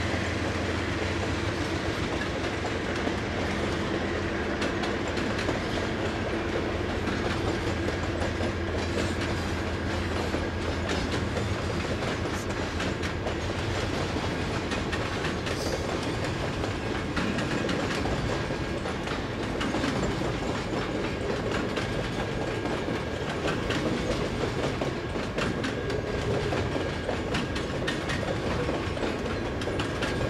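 Double-stack intermodal freight train rolling steadily past on well cars: a continuous rumble of steel wheels on rail, with a run of clicks as the wheels pass over the rail joints.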